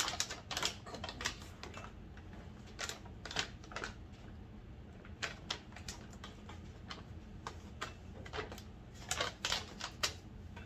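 Mylar bag crinkling and crackling in short irregular bursts as its top is pressed shut between the jaws of a hot handheld heat sealer.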